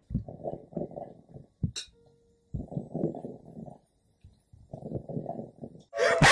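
A pet's low rumbling, heard as three pulsing stretches of about a second each with short pauses between, made while it licks itself.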